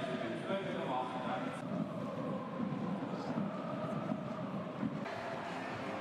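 Football stadium crowd: a steady din of many voices from the home fans celebrating a goal.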